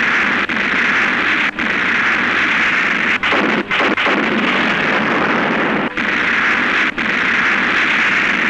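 Explosion sound effects on a film soundtrack, blasts running together into one dense, continuous noise. It drops out briefly several times, at about half a second, a second and a half, three to four seconds, six and seven seconds in.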